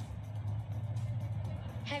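Low steady rumble with soft background music, heard during a pause in a street-interview recording.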